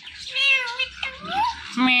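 Ringneck parrot mimicking a cat's meow: a short high call early on, a couple of rising squeaky glides about a second in, and a longer 'meow' starting near the end.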